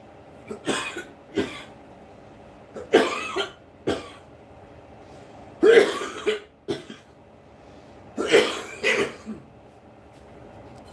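A man coughing in four short fits of two or three coughs each, spaced a couple of seconds apart.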